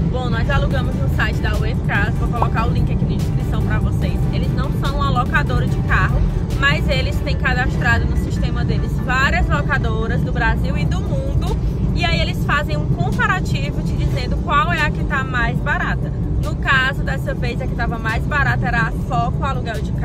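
A woman talking inside a moving car, over the steady low rumble of road and engine noise in the cabin.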